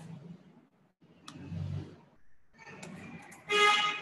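A short, pitched horn-like toot near the end, the loudest sound, after a low rumble about a second in.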